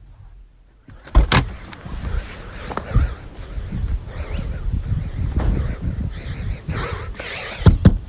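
A car door thumps open about a second in. Then comes the rustle and knocking of a phone being carried by someone getting out and running, and two loud thumps just before the end.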